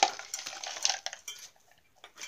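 Dry pet kibble poured from a plastic cup into a plastic pet bowl, the pellets rattling and clattering in a quick loud spill that thins out and stops about one and a half seconds in.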